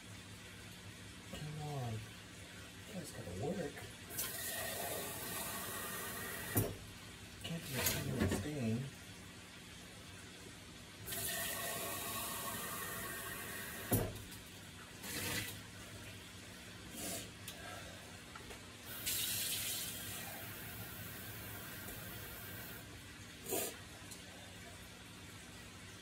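Kitchen tap running in three bursts of a few seconds each, with a few sharp knocks between.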